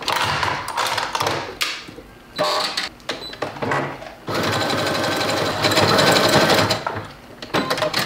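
Brother computerized sewing machine running a zigzag stitch through knit fabric. It starts and stops in several short runs, then runs steadily for about three seconds before stopping near the end.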